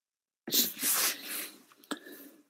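A person's breath blown out noisily, a burst about a second long in a few uneven puffs, followed by a short click near the end.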